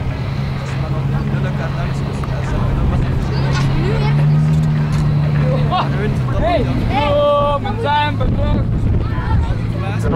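Race car engine running with a steady low drone, its pitch rising a little for a couple of seconds about four seconds in.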